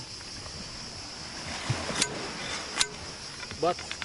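Cicadas buzzing steadily in one high band, with two sharp knocks a little under a second apart in the middle: a beach umbrella's pole being forced down into pebbly sand and striking stones beneath it.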